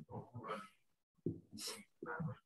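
A person's voice, faint and broken, in two short stretches with a moment of silence about halfway.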